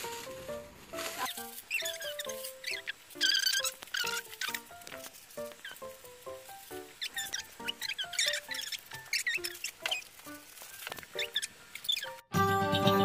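Light background music of short plucked notes, with clear plastic stretch wrap crinkling and squeaking in irregular bursts as it is pulled off a mesh office chair.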